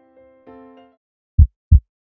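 Soft sustained keyboard notes die away. Then, near the end, a heartbeat sound effect starts: one pair of loud, low thumps, lub-dub.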